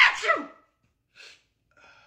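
A man's loud, exaggerated fake sneeze, dying away about half a second in. Two faint short hissing sounds follow, well over half a second apart.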